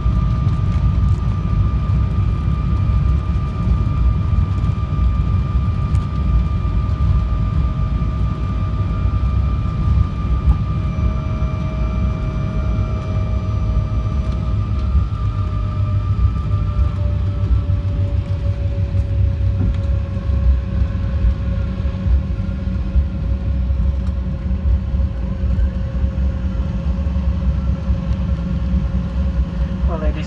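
Inside the cabin of an Embraer E190 jet rolling along the runway after landing: a loud, steady low rumble from the wheels and airframe under the whine of its CF34 engines. Around the middle the higher engine tone fades and the lower one slides down a little as the engines settle toward idle.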